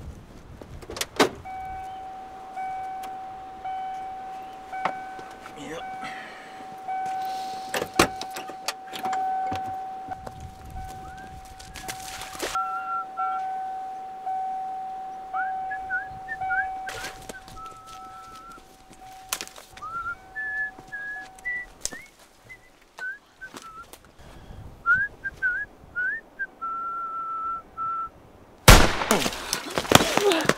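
A pickup truck's open-door warning chime sounding steadily for about twenty seconds, with scattered clicks and knocks. Short high chirps come in over the second half, and a loud burst of noise comes near the end.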